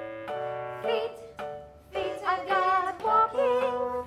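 Recorded children's song: short bouncy keyboard chords, then a sung vocal line comes in about halfway through.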